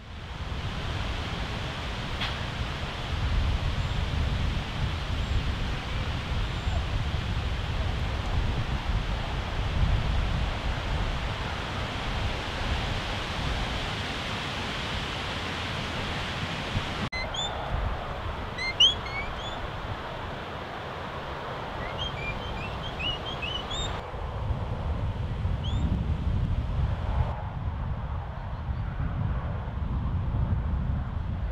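Outdoor field ambience with wind rumbling on the microphone. About halfway through, the sound changes abruptly and several seconds of short, high bird chirps come in, then fade again.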